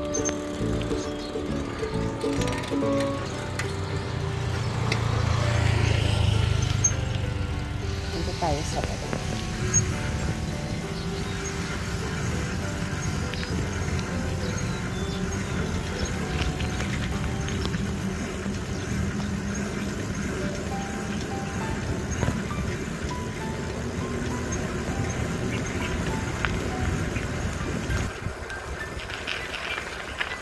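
Background music over the steady running and wind noise of a bicycle being ridden along a paved road, with a low rumble swelling and fading about five seconds in.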